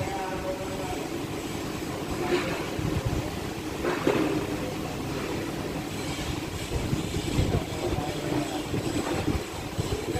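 Steady low rumble of a vehicle engine running, with faint voices in the background and a couple of short knocks, about four and seven seconds in.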